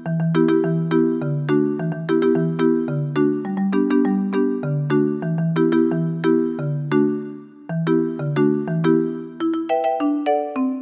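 Yamaha PSR-EW425 digital keyboard played with both hands: chords over a bass line in a voice whose notes start sharply and then hold, about two to three notes a second, with a short break in the playing about three quarters of the way through.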